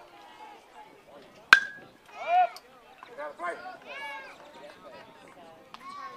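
A metal baseball bat hits a pitched ball with one sharp, ringing ping about a second and a half in. Loud shouts from spectators follow at once.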